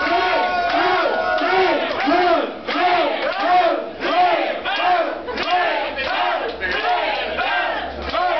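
Loud hardcore techno in a club, with a pitched sound swooping up and down about twice a second, and the dancing crowd shouting along.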